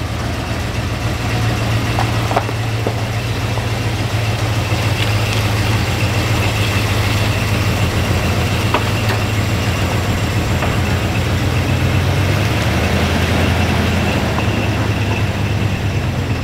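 Dodge 4x4 crew cab pickup's engine running steadily at low speed as the truck creeps along in four-low. It runs with every vacuum line plugged off to stop a bad vacuum leak, and it has no vacuum advance.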